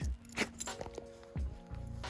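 Soft background music with steady held notes, and a couple of light clicks as a leash clip is unfastened from a dog's collar.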